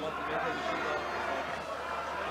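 Pitch-side ambience of a football match: a steady murmur of distant voices and shouts from players and a sparse crowd.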